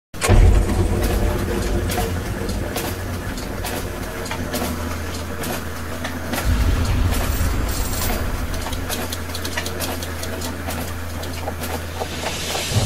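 Mechanical sound design for a clockwork title animation: a low steady rumble under irregular clicking and ticking, with the rumble swelling about six and a half seconds in.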